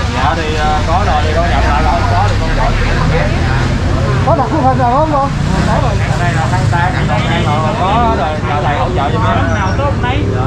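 People talking in Vietnamese over a steady low rumble of street traffic.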